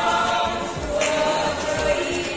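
A small group of people singing together, holding long notes with a change of pitch about a second in.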